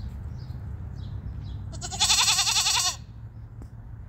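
A single loud, quavering animal bleat about two seconds in, lasting just under a second, over a steady low hum.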